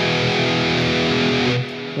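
Distorted electric guitar through the McRocklin Suite amp sim's high-gain amp with the Shredder and Riffer drive pedals on: one chord held and ringing, then cut off about one and a half seconds in. The Riffer adds a gnarly, battery-dying kind of saturation.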